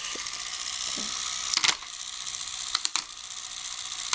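Hard plastic clicks and knocks as the lit inner unit of a toy light-show ball is handled and set into a clear plastic half-shell. There is one sharp click about a second and a half in, then a quick cluster of clicks near three seconds, over a steady hiss.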